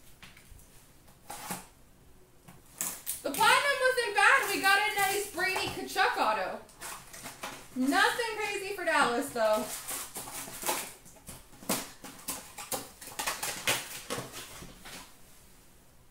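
Trading card packs and cards being handled: a run of short crackles and clicks from wrappers and card stock, busiest in the second half. In the middle, a high-pitched wordless voice sounds twice, louder than the handling.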